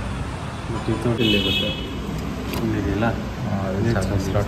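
A short electronic beep, about half a second long, from a DJI OM 5 smartphone gimbal as it is switched on, signalling power-up.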